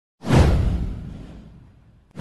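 A whoosh sound effect with a deep boom underneath. It starts suddenly and fades out over about a second and a half, its hiss sliding downward in pitch.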